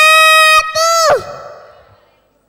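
A young girl singing long, steady high notes into a microphone; after a short break the second note slides down in pitch and fades away over about a second.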